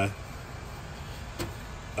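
Turbocharged Honda Civic hatchback engine idling steadily as a low hum, with a single faint click about one and a half seconds in.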